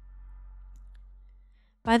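Quiet steady low hum of room tone with one faint click about halfway through; the hum drops out just before a woman starts speaking at the very end.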